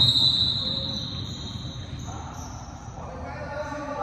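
Basketball game sounds on a hardwood gym court: a ball bouncing and players moving, with a high tone ringing out at the very start and fading over about a second and a half.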